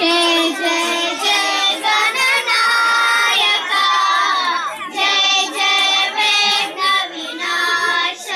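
A group of children singing together into a microphone, a Ganesh devotional hymn, in long held notes with a brief break about five seconds in.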